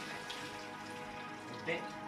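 Tap water running steadily into a mesh strainer of sliced leeks over a stainless steel sink, rinsing the soil off them.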